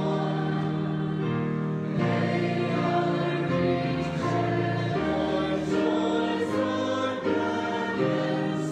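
A group of voices singing a hymn with guitar accompaniment, in long held notes that change every second or two.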